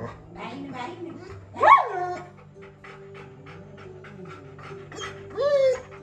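Whining calls from a pet animal: a loud one about a second and a half in that rises and then falls in pitch, and a shorter falling one near the end. Soft background music with a light, regular beat comes in partway through.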